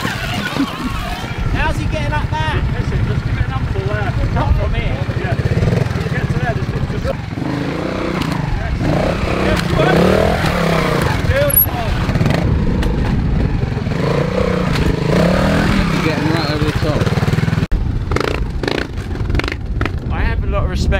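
Trials motorcycle engine running and revving up and down as the bike climbs, with an abrupt change in the sound about two seconds before the end.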